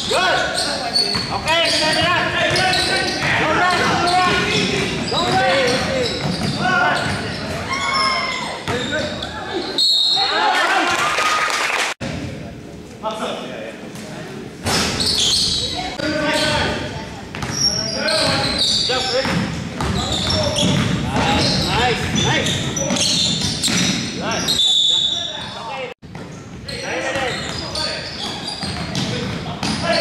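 Live basketball game in a gym: a basketball bouncing on the hardwood court amid players' and spectators' shouts and chatter, echoing in the large hall.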